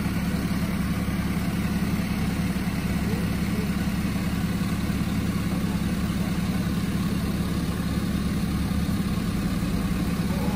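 Flatbed tow truck's engine idling with a steady, even drone.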